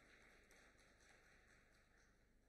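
Very faint audience applause, a soft even patter that slowly fades.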